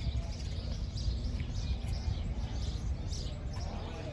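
Small birds chirping repeatedly over a steady low rumble of outdoor background noise.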